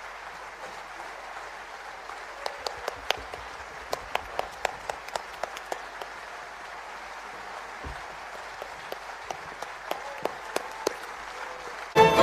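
Audience applauding: a steady patter of clapping, with a number of nearer, sharper single claps standing out from about two and a half seconds in.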